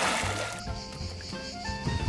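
Water splashing as a man bursts up out of a swimming pool, dying away within the first half second, over light background music of short stepped notes.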